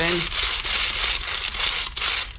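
Pump-action paint brush spinner being plunged to spin a brush inside a plastic bucket of paint thinner: a continuous whirring rattle.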